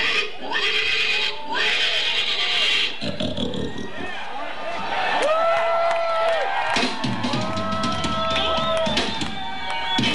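Harmonica played into a vocal microphone through cupped hands: long held notes that bend at their ends, after a breathy, noisy passage in the first few seconds.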